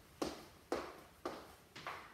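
Four evenly spaced sharp taps, about two a second, marking a steady pulse.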